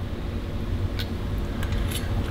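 Steady low room hum in a kitchen, with a few faint light clicks about a second in and near the end.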